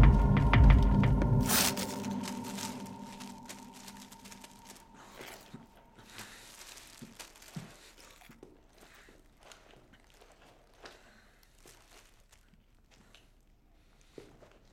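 Loud film score with a low throbbing cuts off about a second and a half in. Then come quiet crinkling and crackling of a plastic food packet being handled and torn open, with scattered small clicks and rustles.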